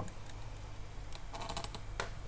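Light clicks and taps of small hard objects being handled, with a quick run of them a little past the middle.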